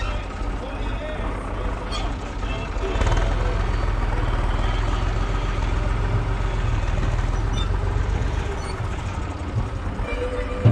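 IMT 539 tractor's three-cylinder diesel engine running steadily nearby, rising in level from about three seconds in and easing off near the end.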